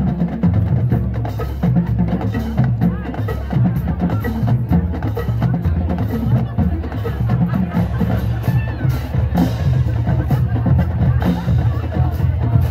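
High school marching band playing, with drums and bass drums prominent under the winds and a steady beat throughout.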